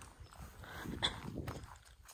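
Footsteps through long grass, soft and irregular, with a brief sharper sound about a second in.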